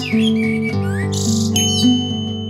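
Acoustic guitar music with bird calls over it: a few rising and falling whistled calls and a short, rapid high trill about halfway through.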